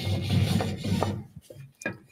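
Jointer fence being slid sideways across the machine, a scraping rub for just over a second that then stops, followed by a few light clicks.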